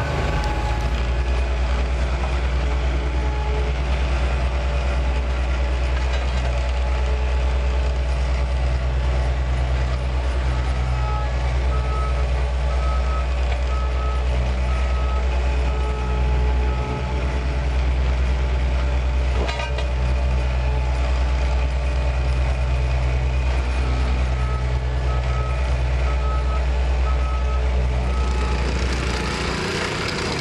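Ride-on double-drum asphalt roller running with a steady, deep drone while it compacts a fresh asphalt patch. Its reversing alarm beeps in two runs, once around halfway and again near the end, and the drone stops just before the end.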